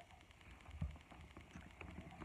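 Faint handling noise of a plastic baby doll being turned over in hands on carpet: soft rustles and light taps, with a dull thump a little under a second in.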